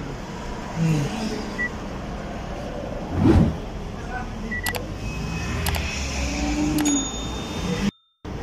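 Car engine idling steadily, heard from inside the cabin, with a few short high dashboard beeps and light clicks as the trip meter is reset. One louder thump comes a little after three seconds in.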